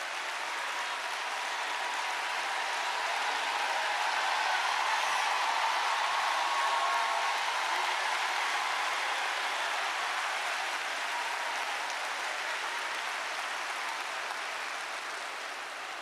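Large audience applauding, swelling to its loudest about halfway through and dying down near the end.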